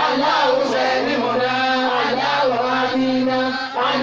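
A man chanting an Islamic prayer into a microphone in long, melodic phrases, pausing for breath briefly near the end, over a steady low hum.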